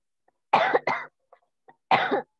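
A person coughing twice in quick succession about half a second in, with another cough beginning right at the end; a couple of faint clicks in between.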